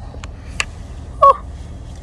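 Car engine idling, heard from inside the cabin as a low steady rumble, with a couple of light clicks and one short squeak falling in pitch a little past halfway.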